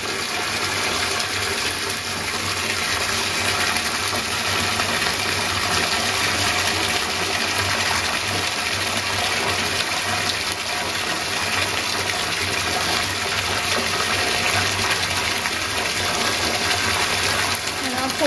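Bathtub tap running steadily, its stream of water splashing into a partly filled tub.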